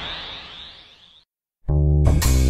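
A sudden shimmering, crash-like sound effect that fades and cuts off just past a second in, followed by a brief silence. Near the end, loud music with piano-like notes over deep bass starts abruptly.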